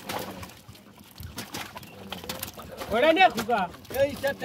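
Light clicks and rustles of fish being pulled free of a mesh fishing net in a wooden boat. About three seconds in, a short, louder rising-and-falling vocal call, most likely a man's voice.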